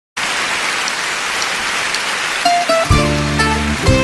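Applause from a large outdoor concert audience. About two and a half seconds in, the band starts the song's introduction: plucked string notes over loud, low sustained chords.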